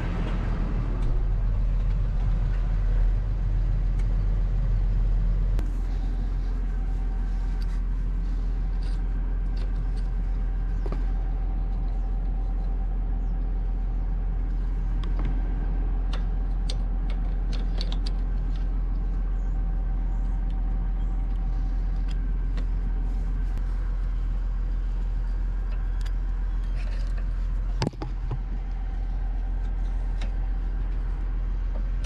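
Tractor engine running steadily while the tractor stands, louder and deeper for the first five seconds or so. Light metal clicks and clinks come through as the depth stops on the disk's hydraulic cylinder are handled, with one sharp knock near the end.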